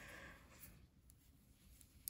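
Near silence, with faint rustling of yarn being wrapped around a finger and a few soft ticks.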